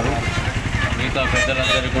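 Steady low rumble of road traffic and engines, with a man's voice coming in about a second in.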